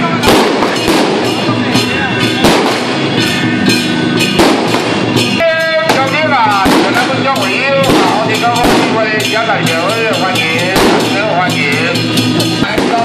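Firecrackers popping irregularly over loud temple-procession music with drums and a wavering melody line.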